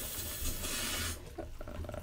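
Bathtub faucet running into a tub full of foam, cut off about a second in.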